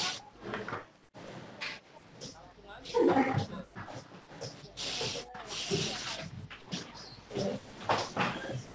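Indistinct voices and background noise coming in over a web-conference audio line, with a couple of short hissy bursts near the middle.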